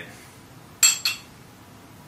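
Two short, sharp ringing clinks about a second in, a quarter of a second apart, from a glass beer bottle being opened and handled just before pouring.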